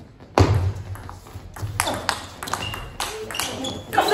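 Table tennis rally: the plastic ball clicking sharply off bats and table in a quick series of hits, starting about half a second in, some hits ringing briefly.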